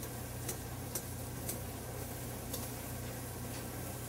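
Faint pot of salted water boiling on a gas burner, under a steady low hum, with a few light ticks about every half second to a second.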